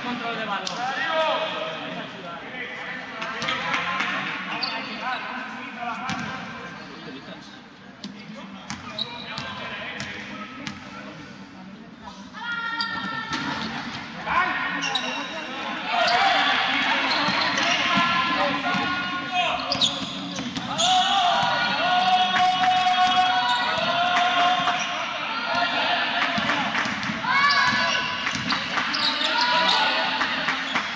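Basketball bouncing on a gym court during play, with many short impacts, and voices calling out across the echoing hall, busier and louder in the second half.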